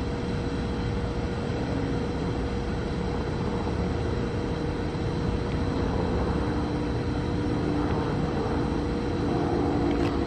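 Approaching train: a steady low rumble growing slowly louder, with the train's horn sounding as a long steady tone, its chord filling out from about two thirds of the way in.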